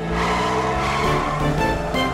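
Cartoon sound effect of a small car's engine running steadily as it drives along, over background music.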